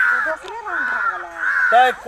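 A bird calling: about three drawn-out calls, each roughly half a second long.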